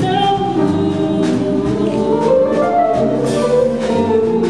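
Vocal jazz quintet singing close harmony over a jazz combo of piano, guitar and drums, with cymbal strokes through it.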